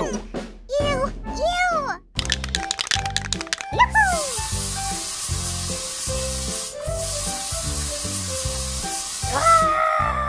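Aerosol spray can rattled rapidly for about a second and a half, then sprayed in a long hiss lasting about five seconds with a brief break partway through, over background music.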